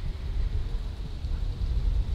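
Steady low rumble of outdoor background noise.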